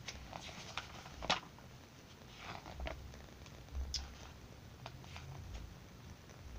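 Magazine pages being turned and handled: soft paper rustles with a few brief crisp sounds, the sharpest about a second in and again about four seconds in.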